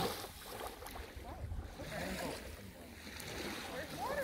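Small Lake Superior waves washing onto a pebble-and-sand beach, loudest at the start and then easing off, with wind rumbling on the microphone.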